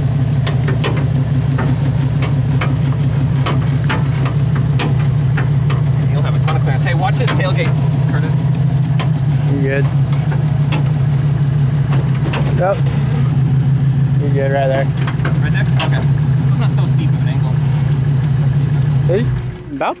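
Jeep engine idling steadily in park, with scattered light clicks and knocks over it. The idle stops about a second before the end.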